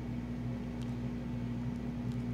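Steady low background hum in the room, with one faint click just under a second in.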